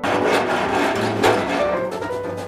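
Metal rods scraping and rasping against a metal panel, a rough continuous scrape that starts abruptly, with background music underneath.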